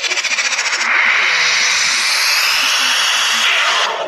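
Logo sound effect played through a TV: a fast rattling shimmer for about a second, then a loud hissing rush that rises in pitch and cuts off suddenly near the end.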